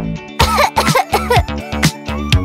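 A young girl coughing in short, acted bursts, about five in quick succession, over a bouncy children's song backing track.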